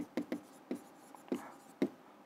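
Stylus writing on the glass of an interactive display screen: a few faint taps and short scratches as the word is written.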